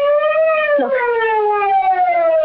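Police car siren sounding a sustained wail that drifts slowly down in pitch, signalling a state troopers' car pulling up.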